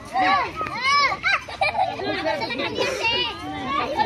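A group of young children playing together, squealing and shouting excitedly in high, overlapping voices.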